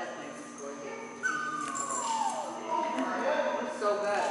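Dog whining: a long high whine sliding down in pitch about a second in, followed by shorter whines.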